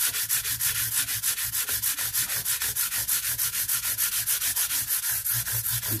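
Abrasive-covered fret crowning tool rubbed fast back and forth along a guitar's metal frets: an even sanding rasp at about six or seven strokes a second.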